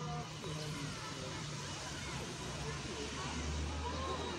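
A car driving up the street, its engine a low hum that grows stronger about three seconds in as it approaches.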